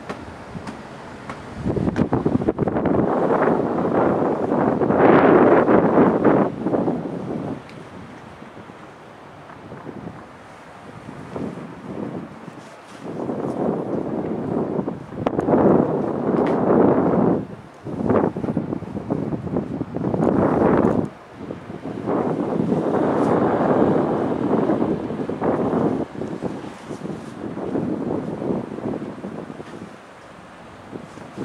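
Wind buffeting the camera microphone in irregular gusts. It comes loudly for a few seconds at a time, with calmer spells between.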